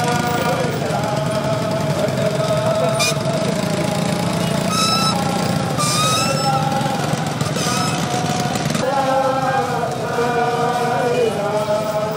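A large crowd of men chanting together while walking, many voices on one line, fading back in the middle and swelling again near the end. Motorcycle engines run through the crowd noise.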